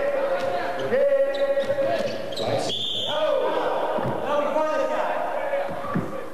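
Basketball game sound: a ball bouncing on the court, with drawn-out pitched voices and a short high whistle about three seconds in.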